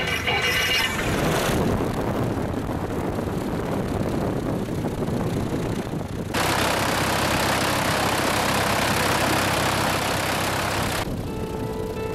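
Grob G115C's piston engine and propeller running as the aircraft taxis, heard from a mic on the outside of the airframe as a steady, rushing noise. About halfway through it abruptly turns louder and brighter.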